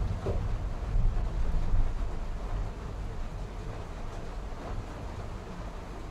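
Steady low rumbling hiss as egg curry cooks and is stirred with a ladle in an aluminium kadai on a gas stove; it is louder for the first two seconds, then settles.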